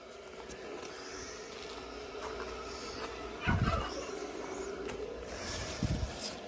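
A steady low background hum with faint rustling, broken by two soft low thumps from the phone being handled among cucumber leaves, one about three and a half seconds in and one near the end.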